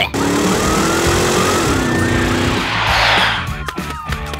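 Cartoon police car siren starting to wail near the end, its pitch sliding up and down, after a short whoosh of noise about three seconds in, over background music.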